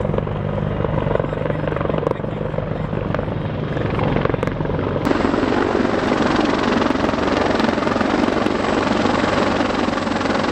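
A large military helicopter flying low overhead, its rotor and engines running steadily. It gets a little louder from about halfway through.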